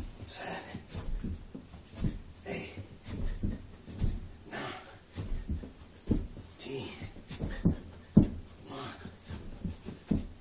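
A man breathing hard through a set of burpees. About every two seconds there is a low thud as he lands on the carpeted floor, each followed by a loud, rushing breath.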